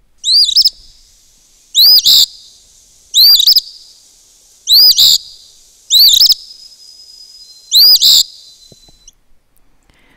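Eastern phoebe singing: six short, high fee-bee phrases about a second and a half apart.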